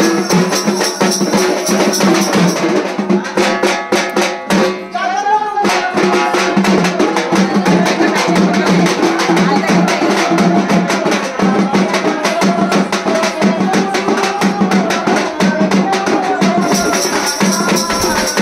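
A large drum beaten in quick, dense strokes, with music and singing over it.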